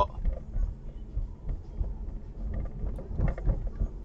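Low, steady rumble of a car's engine and tyres heard from inside the cabin while driving.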